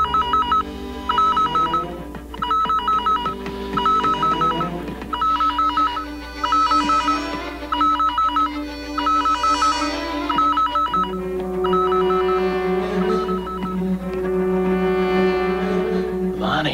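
Spaceship alarm sound effect: short bursts of a rapid two-tone electronic warble, repeating about every second and a half and signalling a critical failure in a cryosleep capsule, growing fainter near the end. Underneath, a sustained synthesizer score swells twice and settles into low held notes about eleven seconds in.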